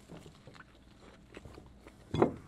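Faint chewing of a bite of hamburger, with a few soft, wet mouth clicks.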